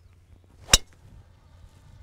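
A golf driver striking a teed ball at full swing: one sharp crack about three-quarters of a second in.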